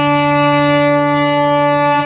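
The Disney Fantasy cruise ship's horn holds one long, steady chord after a run of changing notes, and stops right at the end.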